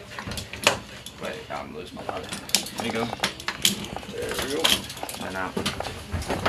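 Metal clinks and knocks of litter poles and strap buckles against the litter rack stanchions as loaded litters are fitted into place inside a helicopter cabin, a scatter of sharp irregular clanks.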